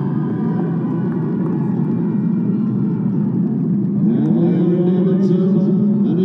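Stadium ambience with music playing, a dense steady mass of sound that grows louder about four seconds in as held, rising tones come in.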